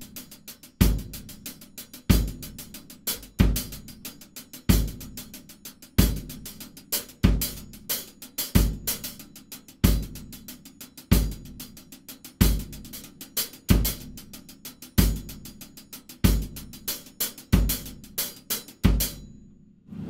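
Drum kit playing a disco breakdown groove: fast, even sixteenth notes on the hi-hat over bass drum and snare strokes on a steady beat. The playing stops abruptly about a second before the end.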